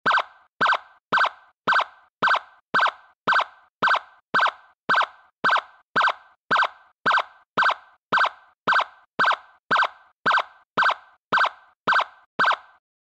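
A repeated short electronic blip, just under two a second, evenly spaced and identical each time.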